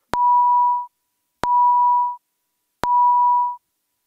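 Three identical steady beeps, each just under a second long and about a second and a half apart, each starting with a sharp click: the House chamber's electronic voting system tone signalling that the roll call vote has opened.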